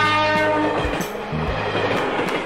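Toy-train sound effect: a chord-like train horn blast that fades out within the first second, followed by a steady rushing hiss like a steam train running.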